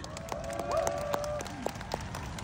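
Audience applauding, with scattered, irregular hand claps and a few faint voices calling out from the crowd.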